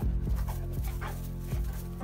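Music playing, with Neapolitan Mastiffs at rough play over it: a dog gives a couple of short falling cries in the first second, among a few thumps.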